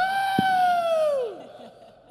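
A person's single long celebratory whoop, held on one high pitch for about a second, then sliding down and fading away.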